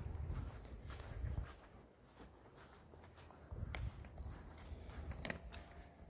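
Footsteps on grass: soft low thuds with faint rustling, in two short spells with a pause between.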